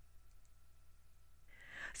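Near silence with a faint steady hum, then a quiet in-breath near the end as the narrator gets ready to speak.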